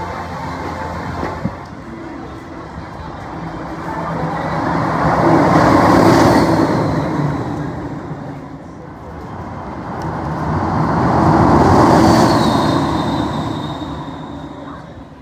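Two Test Track ride vehicles speeding past one after the other on the elevated outdoor track, about six seconds apart. Each passes as a rushing swell that builds and fades, with a high whine that drops in pitch as it goes by.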